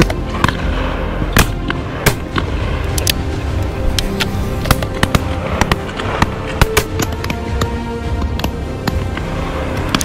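Shotgun shots fired over and over at irregular intervals, some loud and close, others fainter, over background music.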